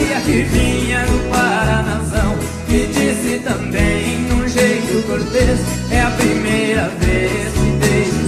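Live sertanejo (Brazilian country) band playing an instrumental passage between sung verses.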